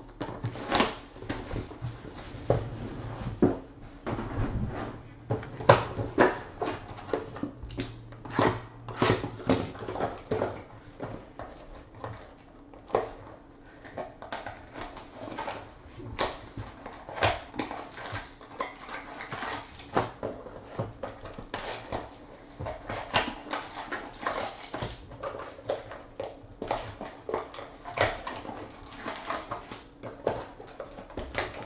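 Sealed trading-card boxes and their wrapped packs being opened and handled by hand: plastic wrap crinkling and cardboard rustling in many short, irregular crackles and taps.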